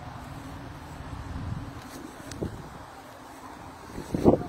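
Wind rumbling on a phone microphone outdoors, with a couple of faint knocks about two seconds in.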